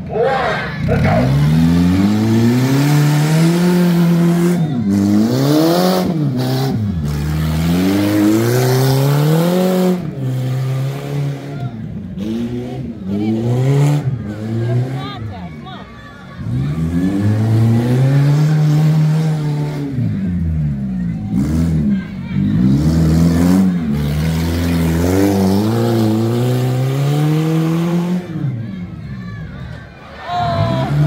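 Car engines racing on a dirt track, revving hard off the start and then climbing and dropping in pitch every few seconds as the cars accelerate and lift around the course. The revs fall away briefly about halfway through and again near the end.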